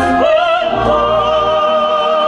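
Live sacred oratorio music: singing over a chamber orchestra. About half a second in, the voice moves to a new note and holds it with vibrato over sustained string and low accompanying tones.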